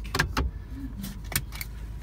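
Inside a moving pickup truck's cab: a steady low engine and road rumble, with several sharp clicks and rattles over it.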